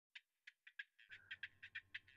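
Near silence with faint, short, high chirps repeating about five times a second.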